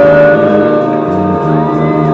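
Live rock band playing: electric guitar, bass and drums with a woman singing, a long note held at the start and a steady cymbal beat behind.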